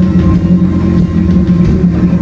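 Live rock band playing loud, with electric guitars and bass holding a heavy, steady droning chord.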